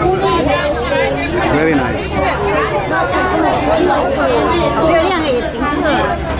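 Chatter of many ferry passengers talking at once, several voices overlapping, over a steady low hum.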